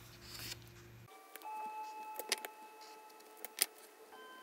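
A planner page rustles as it is turned, then from about a second in soft background music of sustained bell-like notes plays, with a couple of sharp clicks.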